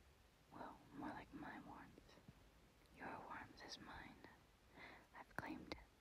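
A woman whispering in two short phrases with a pause between, with a few sharp clicks near the end.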